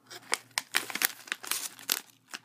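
A plastic snack bag of potato vegetable sticks crinkling in the hands as it is turned over, a quick run of irregular crackles.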